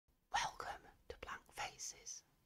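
A person whispering a few short, quiet phrases, ending in a hissing 's'-like sound.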